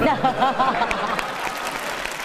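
Studio audience applauding, with a burst of crowd voices at the start that gives way to steady clapping.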